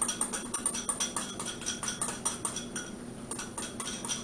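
A utensil scraping and tapping against a small glass bowl, a quick run of ticks several times a second with a brief pause about three seconds in, as melted coconut oil is scraped out into the mixing bowl.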